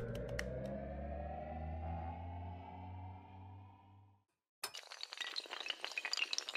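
Animated-logo sound effect: a rising, ringing sweep over a low hum, with a few sharp clicks near the start, fading out about four seconds in. After a brief gap a dense clatter of many small hard pieces toppling begins, a sound effect for a wall of tiles collapsing.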